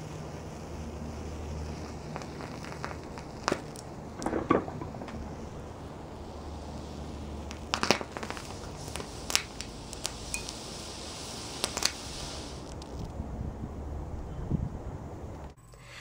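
An alkali metal reacting with water in a porcelain evaporating dish: a string of sharp pops and crackles as the hydrogen given off ignites and explodes, the loudest pops about three and a half and eight seconds in, over a steady low hum.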